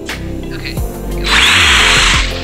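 Music with a steady beat. Just past the middle, an Arrma Granite 4x4 BLX brushless RC monster truck accelerates hard for about a second, its motor whining and its tyres spinning on gritty asphalt, kicking up dust.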